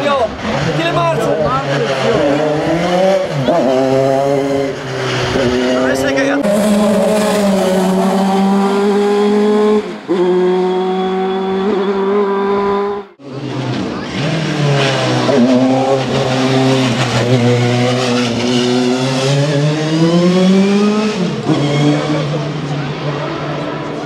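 Dallara F301 Formula 3 car's engine at full throttle, repeatedly climbing in pitch and dropping back as it shifts up through the gears. The sound breaks off abruptly about halfway through, then the engine climbs through the gears again.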